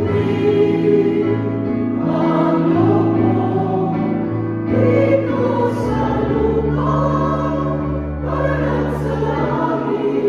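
Mixed choir of women and men singing a slow hymn in harmony, over a keyboard holding long, low sustained notes that change about six seconds in.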